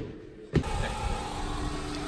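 A steady low hum with a faint higher tone held over it, starting abruptly about half a second in after a brief quiet stretch.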